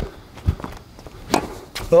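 A few short knocks of footsteps on a hard tennis court, then a tennis racket striking the ball on a backhand about one and a half seconds in.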